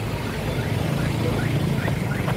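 A motorcycle engine running steadily at idle, a low even engine sound.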